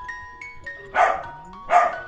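Two short dog barks, one about a second in and one near the end, over soft background music of held notes.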